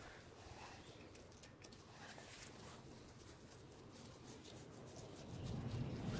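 Toothbrush scrubbing a hen's legs: faint, quick scratchy brushing strokes against the crusty raised scales of a scaly leg mite infestation, worked to loosen them.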